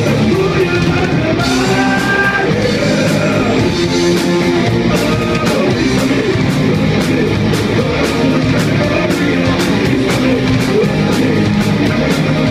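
Rock band playing live and loud: electric guitars, a steady drum beat with regular cymbal hits, and a singer's voice over them.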